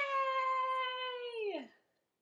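A woman's voice holding one long, high sing-song note for about a second and a half, then sliding down at the end: a drawn-out "byeee" to the child as the lesson closes.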